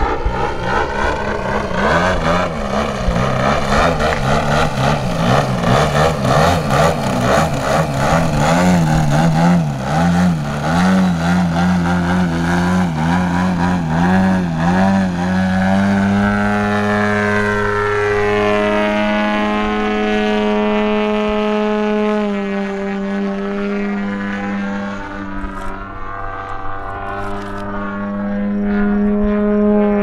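DA 120 twin-cylinder two-stroke gas engine with tuned pipes on a 140-inch Extreme Flight Bushmaster RC plane in flight. Its note wavers rapidly in pitch for the first half, then settles into a steady tone about halfway through, with a short drop about two-thirds of the way in.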